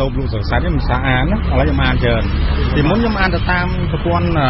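Speech: a voice talking in Khmer in a radio news broadcast, over a steady low rumble.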